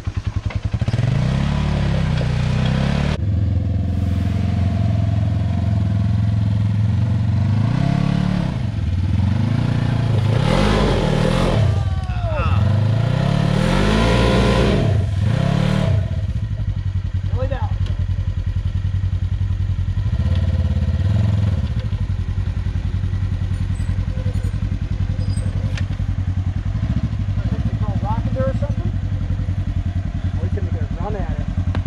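Side-by-side UTV engine revving up and down again and again as it works over a log, the revs climbing highest toward the middle before cutting off sharply; after that the engine runs at lower, steadier revs.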